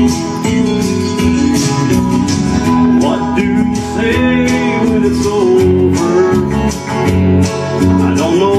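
Instrumental intro of a country ballad played live on an electric guitar, with sustained chords changing in a steady rhythm.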